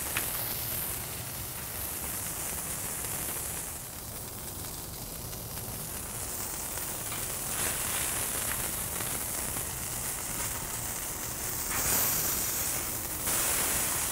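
A smashed ground-beef patty sizzling steadily on a hot Blackstone steel griddle, the fat frying around its edges; the sizzle brightens for a second or so near the end.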